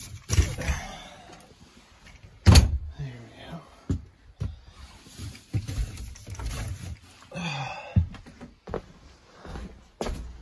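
Irregular knocks and thumps from things being handled and moved in a camper's small interior, the loudest about two and a half seconds in.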